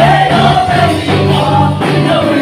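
Live worship band playing an upbeat gospel song: several singers in unison over electric bass, keyboard and drums, with strong sustained bass notes.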